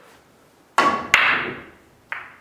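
Pool break shot: two sharp clacks of billiard balls about a third of a second apart, a little under a second in, with the clatter of the scattering balls dying away after.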